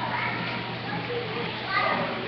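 Young children's voices calling and chattering over the steady hubbub of a busy play area, with a high-pitched call near the end.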